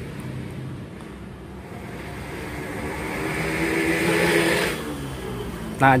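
A motor vehicle passing by, growing louder over about three seconds and then fading away, over a steady low hum.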